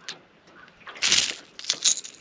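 Two short bursts of rattling, about a second in and near the end: a Rattle Trap, a lipless crankbait with rattles inside, and its treble hooks shaken as a largemouth bass is unhooked by hand.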